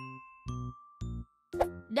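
A short cartoon-style musical sound effect: a bright held ding over three short plucky notes about half a second apart.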